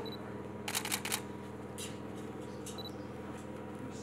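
DSLR camera shutter firing a quick burst of four or five clicks about a second in, then single shutter clicks, over a steady low hum.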